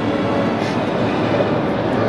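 Steady background noise with a low hum, even throughout, with no separate clicks or knocks standing out.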